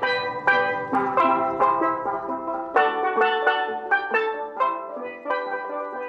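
Steel pans playing a lively melody, notes struck about three or four a second, each ringing briefly.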